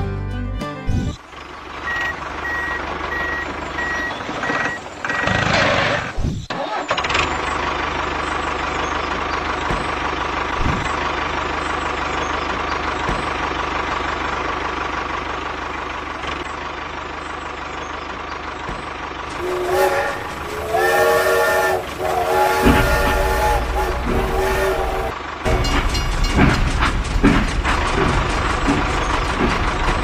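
Vehicle sound effects: a steady running rumble, with a multi-tone horn sounding in two long blasts about twenty seconds in, followed by an engine running.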